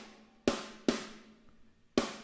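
Sampled EZdrummer snare drum played alone with no EZmix processing: two sharp hits about half a second apart and another at the very end, each leaving a long ringing decay. This is the dry snare, with less punch than with the preset on.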